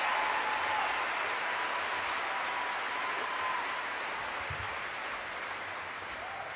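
A concert-hall audience applauding after a song, the applause slowly dying down.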